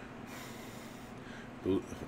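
A man's audible breath lasting under a second, a short rush of air, over a steady low room hum. A brief vocal sound follows near the end.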